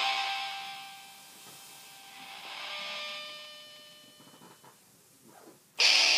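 Guitar music: a held chord rings out and fades, swells briefly again about three seconds in and dies away to a few faint clicks, then loud strummed guitar starts abruptly just before the end.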